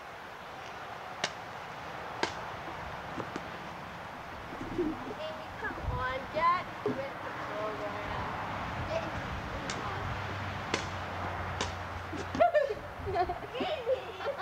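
A few sharp knocks of a tennis racket hitting a ball, spaced a second or more apart, with three in a row near the end. Children's voices and calls come in between.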